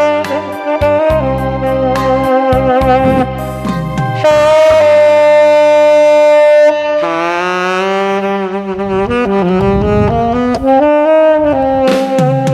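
Tenor saxophone playing a slow minor-key melody over a backing track with bass and keyboard. About a third of the way in the saxophone holds one long, loud note, then moves on through shorter notes with vibrato.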